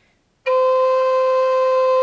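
High Spirits Sparrow Hawk Native American flute in A, made of aromatic cedar, playing one steady held note with only the lowest finger hole (right ring finger) open. The note starts about half a second in and holds at one pitch, without vibrato.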